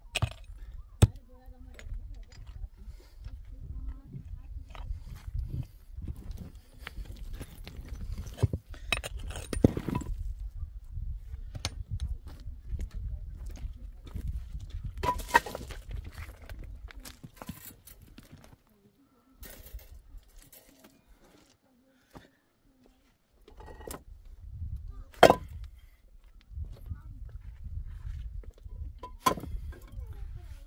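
Stone on stone: scattered sharp knocks and clinks of a hand pick striking rocky ground and of flat rocks being moved and set onto a dry-stone wall, with a few louder single strikes and a near-silent lull midway.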